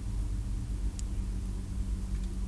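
Steady low hum with faint background hiss and a single faint tick about halfway through.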